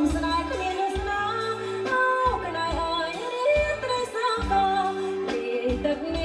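Background music: a song with a woman singing over a band and a steady bass beat.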